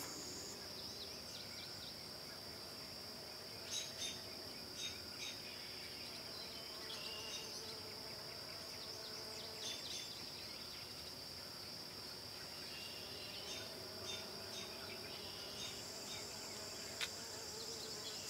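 A steady high-pitched insect drone in the woods, with a few faint ticks.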